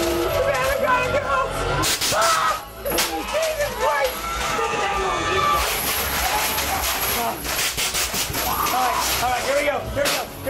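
Frightened voices yelling and laughing in a haunted-house attraction over background music, with a loud hissing rush for about two seconds midway.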